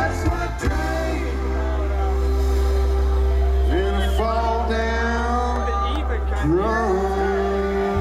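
Live band with electric guitar, electric bass, keyboards and drums: the drums stop about half a second in and the band holds a long sustained chord over a steady bass note. Twice, near the middle and again later, a note slides up and is held.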